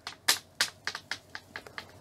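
A run of light, sharp clicks, about eight at uneven spacing over two seconds.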